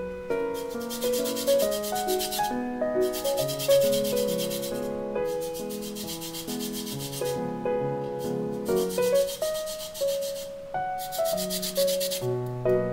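Lemon rind being grated on a fine stainless-steel zester: several runs of quick scratchy rasping strokes, each lasting a second or two, with short pauses between them.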